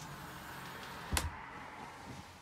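A single sharp knock about a second in as the wooden bed platform of a travel trailer is lifted on its gas strut to open the storage underneath, over a faint steady hiss.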